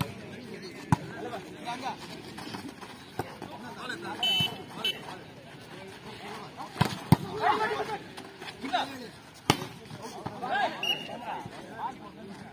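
Volleyball rally on an outdoor court: several sharp smacks of hands striking the ball, the loudest about seven and nine and a half seconds in, over voices of players and spectators.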